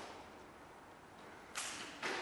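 Karate gi sleeve snapping with a fast arm technique: one sharp crack of fabric about one and a half seconds in, after a fainter swish at the start.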